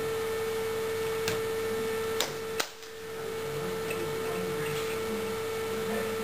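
Steady electrical hum with one strong tone in the recording, broken by two sharp clicks a little over two seconds in. Right after the second click the sound briefly drops away, then fades back in.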